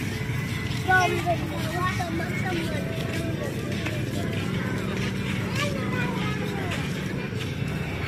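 Busy outdoor crowd ambience: people's voices and music mixed with the steady hum of motorcycle and other vehicle engines, with a brief louder sound about a second in.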